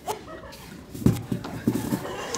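Quick footsteps on a wooden stage floor, a handful of heavy steps close together in the second half.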